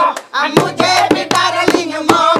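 Voices singing a Bhojpuri sohar folk song, with the strokes of a dholak drum and hand claps keeping the beat.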